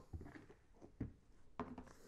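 A few faint knocks and clicks from metal tools handled in a plastic cooler mash tun, over quiet room noise.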